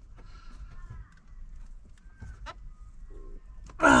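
A few faint sharp clicks, the clearest about two and a half seconds in, from plastic trim clips being pried and popping loose from a car dashboard. A faint wavering whine runs through the first second.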